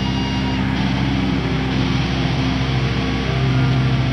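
Live heavy metal band holding steady, sustained distorted low notes from guitars and bass, with no drum or cymbal hits, over loud hall noise.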